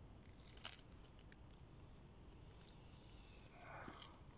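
Near silence, with a few faint short sounds in the first second and another faint sound just before the end.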